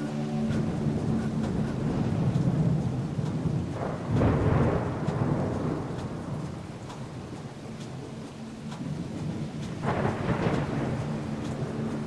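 Low rumbling noise that swells up twice, about four seconds in and again near the end, in place of the soundtrack's sustained music tones.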